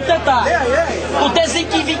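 Several people talking over one another, with a steady low hum underneath.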